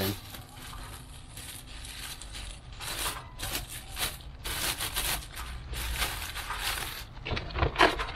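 Clear plastic bag crinkling and rustling irregularly as a used car air filter is handled and wrapped in it; the rustling grows busier about three seconds in.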